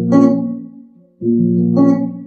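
Electric guitar finger-picked on the low strings of barre chords, sixth string to fourth: a first set of notes rings and dies away about a second in, then a second set is plucked and rings on.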